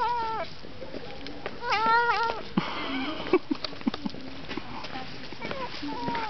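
A tortoiseshell cat gives two short, whiny meows while biting at a sausage, the first at the very start and the second about two seconds in. A brief burst of hissing noise follows, and then small clicks as it chews.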